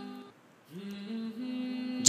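Soft background music of held, drone-like chords. The chord fades out about a third of a second in, and a new held chord enters near three-quarters of a second and stays steady.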